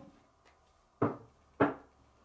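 Two short knocks on a tabletop about half a second apart, the second louder, as a tarot card deck is handled.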